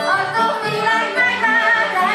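Hungarian folk music played live by a small band: a violin carrying a wavering melody over clarinet, cimbalom and a double bass that steps from note to note about every half second, with a woman's voice singing.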